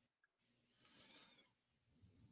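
Near silence, with one faint, brief sound about a second in.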